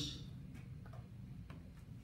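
Quiet room tone with a low hum and a few faint, scattered ticks, just after the last of a man's amplified voice fades out.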